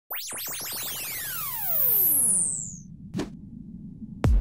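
Synthesized intro sound effect: a cluster of electronic tones that sweep up fast and then glide down in pitch, swelling louder in the middle, then a brief sharp swish about three seconds in.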